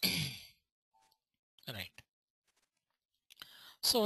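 A man sighs, a breathy exhale with his voice falling in pitch. About a second and a half later there is a short breath sound, and near the end he draws a breath just before he starts speaking again.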